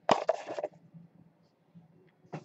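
Thin white cardboard card box handled as its lid and base are pulled apart and set aside: a sharp scrape and rustle of cardboard lasting about half a second at the start, then only faint small ticks.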